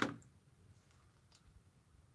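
Near silence after a voice trails off, broken by a few faint, short ticks.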